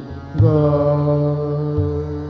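Hindustani classical vocal in Raag Basant Mukhari: a male singer holds one long, steady note that starts about half a second in, with tabla accompaniment giving a low stroke near the end.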